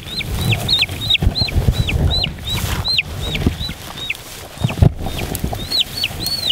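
A lost meat-chicken chick peeping loudly and repeatedly, about three short falling peeps a second, the calls of a chick separated from its flock. Low rustling and handling noise from hands searching through the grass, with a thump near the end.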